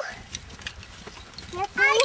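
Faint outdoor background noise, then a child's voice starting to speak near the end.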